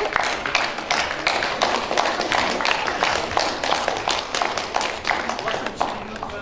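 Audience applause: many hands clapping densely and unevenly, with voices chattering underneath.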